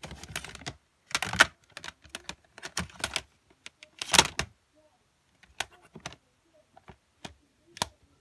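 Plastic CD cases clicking and clattering against each other as they are flipped through in a plastic crate: irregular clicks, with louder clacks about a second in and midway.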